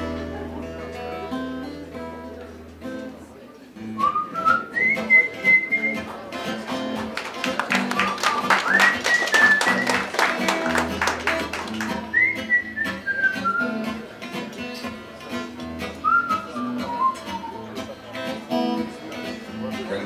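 Acoustic guitar playing a song's introduction, picked and then strummed more densely in the middle, with a melody whistled over it from about four seconds in until near the end.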